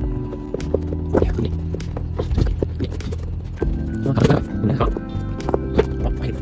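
Background music with sustained tones, over irregular clicks and knocks of a cardboard figure box and its packaging being handled as it is opened.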